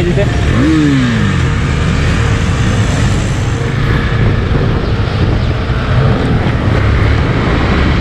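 KTM motorcycle engine running under way, mixed with wind and road noise on a helmet-mounted camera. One falling tone is heard about a second in.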